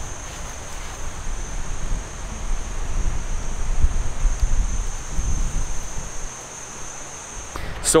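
Outdoor garden ambience: a steady high-pitched insect drone over wind rumbling on the microphone, with the drone cutting off near the end.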